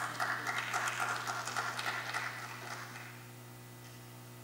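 A few people in the congregation clapping, sparse and irregular, dying away after about two and a half seconds.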